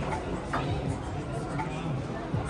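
Low, indistinct voices over steady background noise, with no distinct event.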